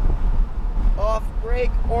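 Low, steady rumble of a Lamborghini Huracán's 5.2-litre V10 and road noise heard inside the cabin as the car slows for a corner. A man's voice speaks over it in the second half.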